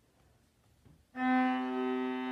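Viola: a pause of about a second, then a single bowed note that enters suddenly and is held, rich in overtones.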